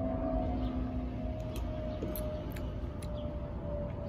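Steady low background rumble with a faint constant hum and a few faint clicks; a second, lower hum stops about a second and a half in.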